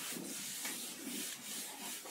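Handheld eraser wiping marker off a whiteboard in repeated back-and-forth strokes, about two a second.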